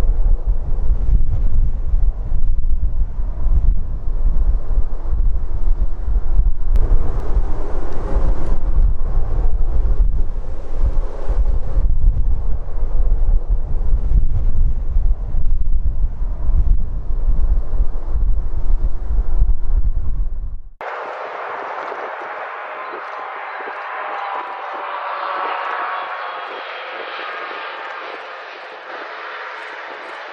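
Boeing 737-800 jet engines running on the landing roll, a loud low rumble with wind buffeting the microphone. About two-thirds of the way in, the sound cuts abruptly to the quieter hiss and thin whine of an Airbus A320's jet engines as it lands.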